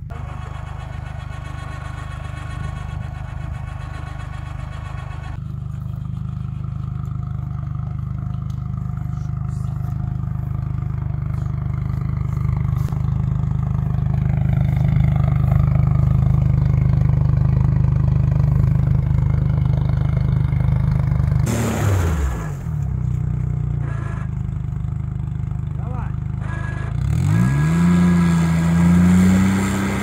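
All-terrain vehicle engine running steadily while working in bog mud; its revs drop sharply a little after twenty seconds in and climb again near the end.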